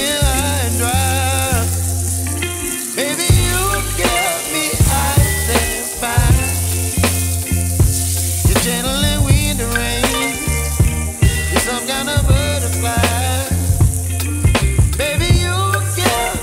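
Beef strips sizzling in a frying pan as they are stirred with a spatula. A song with a singer and a steady bass line plays over the frying.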